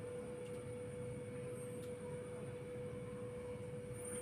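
A steady hum at one unchanging mid pitch, over a low background rumble.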